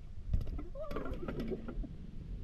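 A BMX bike clattering onto concrete in a string of sharp knocks and rattles after a failed trick in which the rider never caught the handlebars; the loudest hit comes early, and a voice briefly cries out in the middle.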